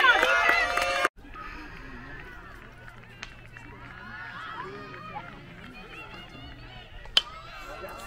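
Spectators cheering and calling out for about a second. After that there are quieter, scattered voices from the stands, and a single sharp crack about seven seconds in as the bat hits the pitched baseball.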